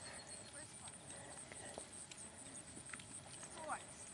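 A foxhound pack and horses moving about on grass: a faint rustling haze with scattered light knocks, and a short high call about three and a half seconds in.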